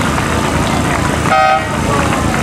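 A single short horn blast about a second and a half in, a steady note of about a quarter second, over steady outdoor background noise. It is the kind of hooter sounded as a boat crosses the finish line of a rowing race.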